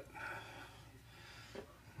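Very quiet room with faint handling noise from a hand picking up a tool off the workbench, with a brief soft sound about a second and a half in.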